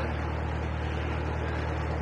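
Narrowboat's diesel engine idling steadily, a low even hum.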